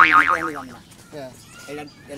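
A cartoon-style 'boing' sound effect with a wobbling pitch, sudden and loud at the start and dying away within about half a second.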